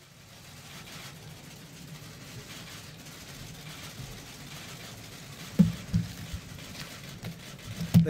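Steady room noise of a crowded briefing room, then two sharp thumps against the lectern close to its microphones, about five and a half and six seconds in.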